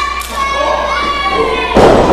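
A wrestler taken down onto the ring mat with one loud thud near the end. Before it comes a long, high-pitched shout.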